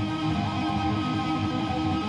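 Electric guitar played with two-hand tapping: a fast, even run of repeating notes on the G string, the ninth fret tapped against the second and fifth frets held by the fretting hand.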